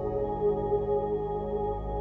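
Space ambient music: a slow drone of sustained, layered tones with no beat.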